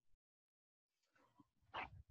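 Near silence, broken near the end by one short, sharp sound.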